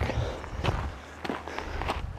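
Footsteps on a rocky dirt trail, a few steps scuffing and crunching along at walking pace.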